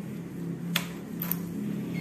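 A few light metallic clicks from a motorcycle's ignition key and its key ring being handled, one near the middle and a quick double click about half a second later, over a steady low hum.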